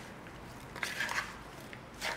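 Dressed broccolini and sliced mushrooms being tossed together in a mixing bowl: a soft, wet rustle of vegetables, louder for a moment about a second in.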